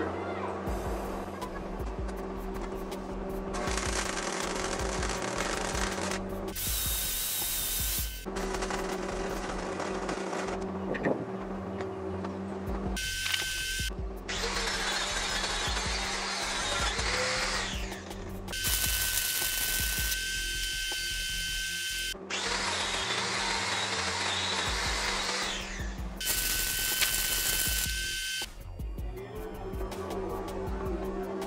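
Angle grinder grinding steel, in about seven bursts of a few seconds each with a steady high motor whine, starting and stopping abruptly, over background music.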